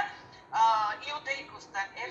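Only speech: a voice talking on a video call, heard through the laptop's speaker.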